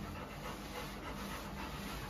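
A Labrador panting, faint and steady.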